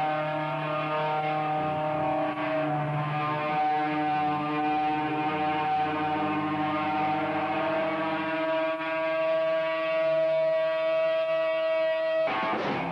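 Amplified electric guitar feedback: a loud, sustained droning chord with no beat, its pitches shifting every few seconds.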